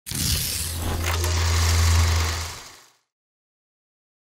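Logo-intro sound effect: a dense rush of noise over a deep, steady hum, with a sharp hit about a second in. It fades away by about three seconds in, then silence.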